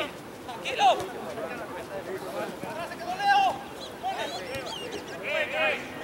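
Voices talking and calling out, with two louder calls about one second and about three seconds in.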